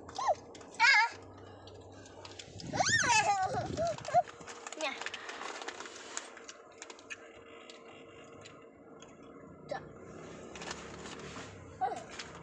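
A young child's voice, loudest in one high call that glides up and down about three seconds in, followed by faint scattered clicks and rustles of a small plastic snack packet being handled.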